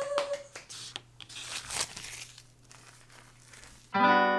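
A woman's held, excited high-pitched squeal ending about half a second in, over a few quick hand claps, followed by scattered crinkling and rustling that fades toward the end.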